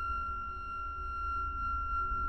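Eerie horror-film background music: a steady high ringing tone held over a deep, pulsing low rumble.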